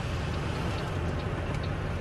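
Snowplow truck's engine idling, heard from inside the cab: a steady low rumble.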